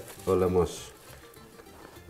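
A single short spoken word, then faint background music under the quiet handling of the meat.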